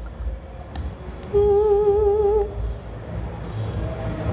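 A woman's hummed "hmm", one held, slightly wavering note lasting about a second, as she thinks over a question before answering. A low rumble of room noise runs underneath.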